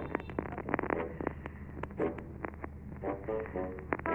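A quick, irregular run of clicks and taps over a steady low hum, with a few brief pitched sounds mixed in.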